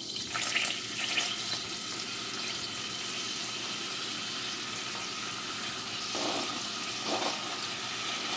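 Melted butter sizzling steadily in a saucepan as sliced hot dog rounds are dropped into it, with a few brief louder bursts as more pieces land.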